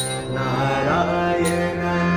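Harmonium playing sustained chords under a man's devotional bhajan singing, with a sharp percussion stroke about every one and a half seconds.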